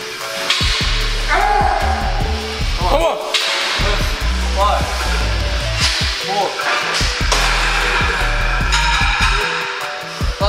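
Music with a steady heavy bass line and a recurring vocal line.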